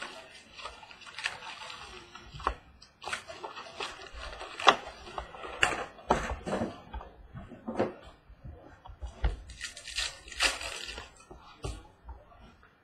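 Foil-wrapped trading card packs being pulled from a cardboard hobby box and stacked, giving irregular crinkling, rustling and light taps. The sharpest tap comes about halfway through.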